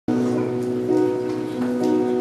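Electronic keyboard playing a song's introduction in sustained chords, which change about a second in and again shortly before the end.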